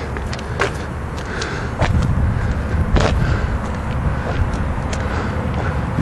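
Uneven low rumble of wind buffeting a handheld camera's microphone outdoors, with a few scattered clicks and knocks from footsteps and camera handling as the camera is carried back from the car.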